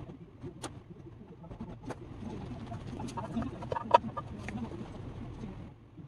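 Bird calls in the background, with a handful of sharp clicks or knocks spread through it, the loudest about four seconds in.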